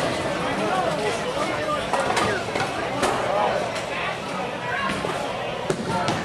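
Bowling alley din: many voices chattering at once, with a few sharp knocks and clatters of balls and pins, the loudest almost six seconds in.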